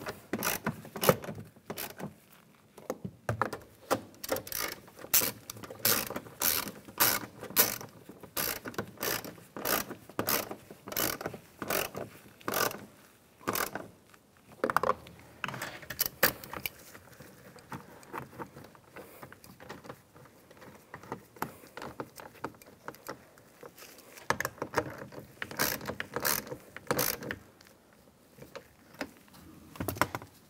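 Hand socket ratchet clicking in runs of quick strokes as screws are tightened down; a long run first, a pause with only small clicks, then a short run a few seconds before the end.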